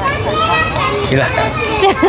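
Speech: a few people talking over each other and laughing, with no other distinct sound.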